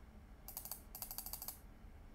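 Faint, rapid ratcheting clicks of a computer mouse's scroll wheel turning notch by notch, in two quick runs about half a second and one second in.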